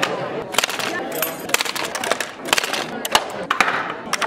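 Rapid, irregular wooden clacks and knocks from small wooden trebuchets being loaded and fired in quick succession, over crowd chatter.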